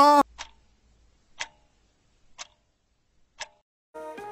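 A voice breaks off on a short 'ha' at the very start. Then a clock ticks four times, evenly about a second apart, on near silence.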